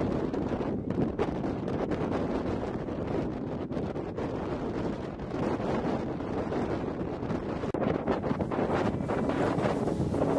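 Wind buffeting the camera's microphone: a continuous rough noise, strongest in the low end, that swells and dips in gusts.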